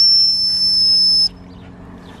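Gundog training whistle blown in one long, steady, high-pitched blast that cuts off sharply about a second and a half in. A single long blast is the usual stop-and-sit signal to a gundog, and the Labrador sits to it.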